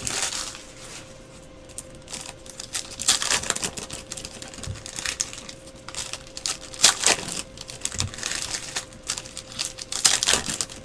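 Foil trading-card pack wrappers crinkling and cards being handled and flicked, in scattered irregular bursts, with the loudest crinkle about seven seconds in.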